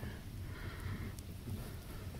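Faint crumbling and rustling of wet mud as fingers pick apart a clod of soil, with a few faint ticks.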